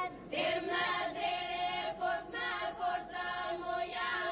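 Unaccompanied Albanian Lab polyphonic folk singing by a group: a steady drone held by the group under leading voices that sing in short phrases.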